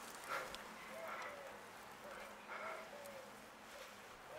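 A domestic cat mewing softly: three or four short, faint mews, each a brief rise and fall in pitch.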